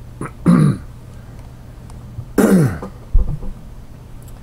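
A man clearing his throat twice, about two seconds apart, each a short loud rasp that falls in pitch, with a brief low thump just after the second.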